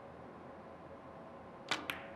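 Cue tip striking the cue ball in a three-cushion carom shot: a sharp click near the end, followed about a fifth of a second later by a second click as the struck ball makes contact.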